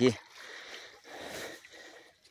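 Faint water sloshing and splashing around a large fish held in shallow river water.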